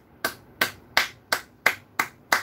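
A person's hands making a quick, even run of sharp claps or snaps, about three a second and six in all.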